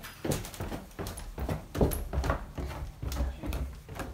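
Footsteps going down basement stairs, a run of uneven knocks about two to three a second.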